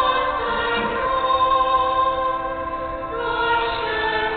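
Choir singing a slow sacred hymn in long held notes.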